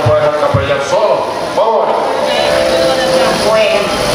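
Speech amplified through a handheld microphone and loudspeakers in a hall.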